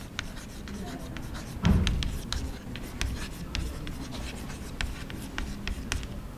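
Chalk writing on a blackboard: a run of quick taps and scratches as a heading is written out in chalk. There is a single dull thump a little under two seconds in.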